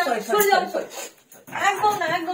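A person's voice whining and pleading in a high, drawn-out, speech-like way, with a short break a little past the middle.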